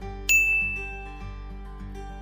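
A bright chime rings once, about a third of a second in, and fades out slowly. It plays over a steady music bed of held low notes, as an edited transition sound for an on-screen question card.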